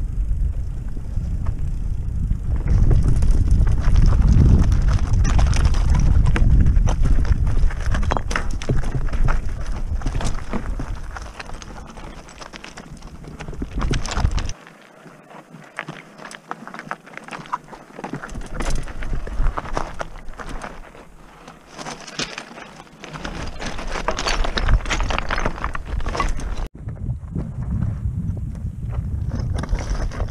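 Mountain bike ridden down a loose, rocky trail: tyres crunching over stones and the bike's chain and frame rattling in a dense clatter, with wind rumbling on the microphone. It quietens for a stretch in the middle, then the clatter picks up again.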